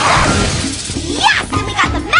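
Fast cartoon chase music with a low driving pulse. A noisy crash-like burst comes at the start, and quick swooping pitch slides come about a second in and again near the end.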